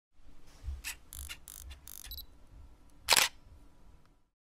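Camera sound effects: several short mechanical whirs and clicks, then one loud shutter click about three seconds in.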